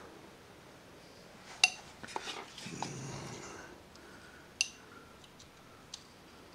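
Carving knife cutting into a wooden figure: quiet scraping of the blade in the wood, with two sharp clicks, one about a second and a half in and another near five seconds, as the knife makes a cut to separate the ear.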